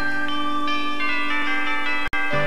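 Instrumental music: the lead-in to a children's TV show's opening Christmas song, with a held low note and higher notes that change above it.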